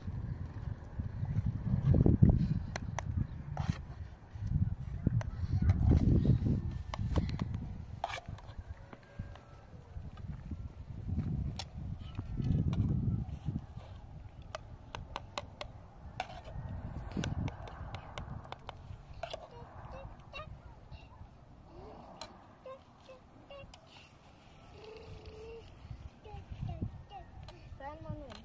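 Spoons and dishes clinking as food is served and eaten, with many short sharp clicks, under low gusts of wind on the microphone that swell and fade several times.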